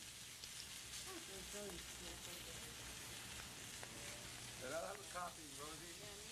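Steady sizzle of food frying on a kitchen grill, with faint murmured voices.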